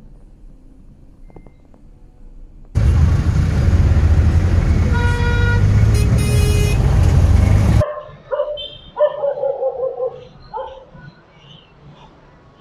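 Heavy city traffic heard from inside a vehicle: a loud steady rumble that starts abruptly about three seconds in and cuts off near eight seconds. Two car horns toot in the middle of it, one after the other at different pitches.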